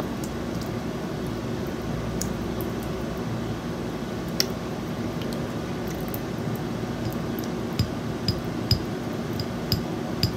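Steady hum of an electric fan, with one sharp click about halfway through and then a run of sharp clicks, about two a second, over the last couple of seconds, from a utensil on a plate as food is cut into bite-sized pieces.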